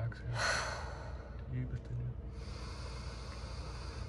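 Deep diaphragmatic breathing in a paced breathwork round: a short, forceful exhale about half a second in, then a long, deep inhale starting about two seconds in.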